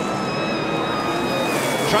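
NASCAR stock cars' V8 engines running at speed, a steady high-pitched whine that drops slightly in pitch near the end, over a constant rushing noise.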